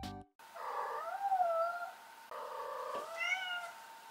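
A Munchkin cat meowing twice: two long, drawn-out meows with wavering pitch, the second rising near its end.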